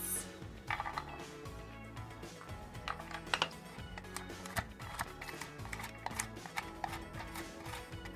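Chef's knife chopping walnuts on a wooden cutting board: a run of irregular sharp knocks of the blade hitting the board, over steady background music.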